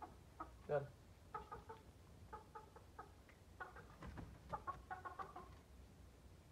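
Aseel chickens clucking in short runs of quick clucks, on and off.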